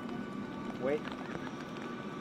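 A voice calling "¿Oye?" once, briefly, about a second in, over a steady background hum.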